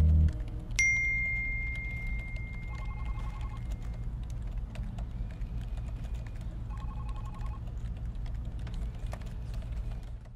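The song's music cuts off just after the start. About a second in, a smartphone message notification gives a single bright ding that rings on and fades over a few seconds. It is followed by faint tapping and two short pulsed buzzing tones over a steady low hum.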